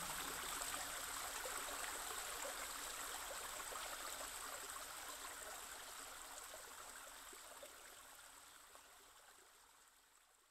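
Faint running water, a steady trickling stream, fading out gradually until it is gone about eight seconds in.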